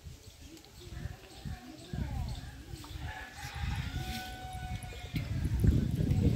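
A bird calling: a rising call that settles into one long held note about halfway through, over low rumbling handling noise that grows louder near the end.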